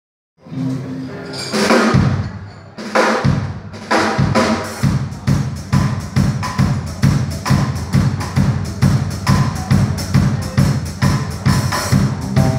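Live band playing an instrumental passage with no singing: the drum kit's bass drum and snare lead, under electric bass and guitars. It opens with a few heavy accented hits, then settles into a steady beat.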